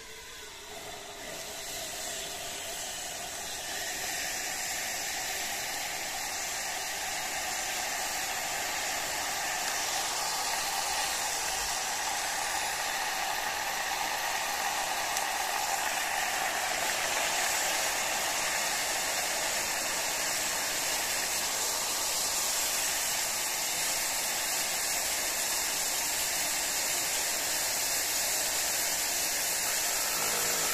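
Liquid nitrogen being poured into a glass bowl over a stepper motor and boiling off with a steady hiss. The hiss builds over the first few seconds, then holds.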